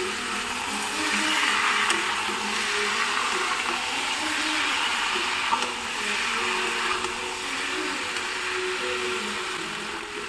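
Whole prawns sizzling in hot oil in a wok as they are stirred and turned, the sizzle growing louder about a second in.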